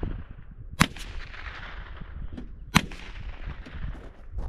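Two rifle shots about two seconds apart, each a sharp crack followed by an echo that fades over about a second.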